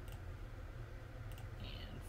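Two computer mouse clicks, about a second and a half apart, clicking the button of a web page's list randomizer, over a steady low hum.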